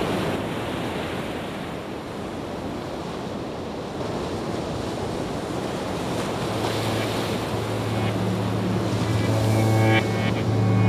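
Background soundtrack: a washing, surf-like noise over a steady low drone, with musical tones coming in near the end.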